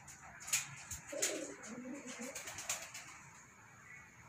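Domestic pigeon cooing, a low call from about a second in that lasts about a second, with a few sharp clicks scattered around it.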